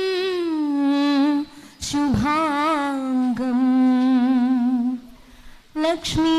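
A woman's solo voice singing slow, long held notes with vibrato into a handheld microphone, breaking off twice briefly between phrases.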